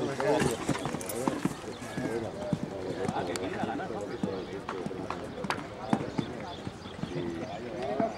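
Background voices talking, with scattered sharp knocks and thuds from a show-jumping horse's hooves as it lands and canters on a sand arena.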